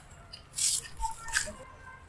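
Dry, crumbly sand-cement block being broken apart between fingers: three short gritty crunches, the first about half a second in, as grains fall away.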